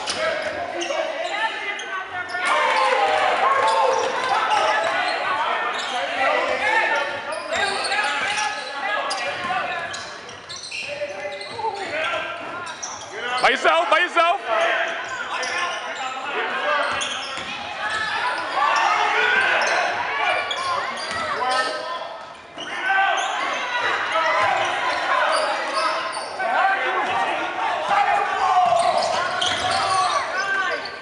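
Basketball game in a gym: a ball dribbling on the hardwood court under continuous indistinct shouting and talking from players and spectators, echoing in the hall. About halfway through comes the loudest moment, a brief burst of sneaker squeaks.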